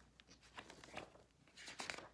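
Faint rustling and soft clicks of textbook pages being handled, with a brief cluster of them near the end.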